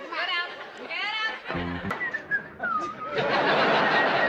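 Sitcom studio-audience laughter, then a short low thump about a second and a half in, a brief whistle-like tone, and from about three seconds a dense crowd noise.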